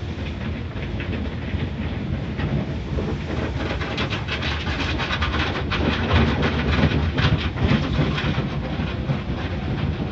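Automatic car wash heard from inside the car: hanging soft-cloth strips and water spray rushing and slapping over the windshield and body. The rapid, irregular slaps grow denser about four seconds in.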